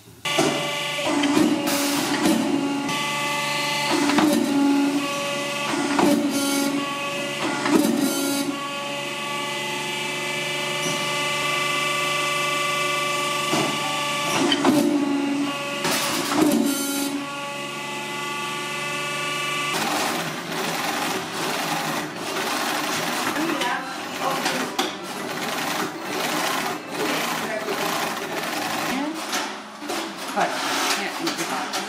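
A leather clicker cutting press runs with a steady machine hum, with a short low pulse about every two seconds as it cycles through cuts. The hum stops suddenly about two-thirds of the way through, and scissors then snip repeatedly through sheepskin shearling.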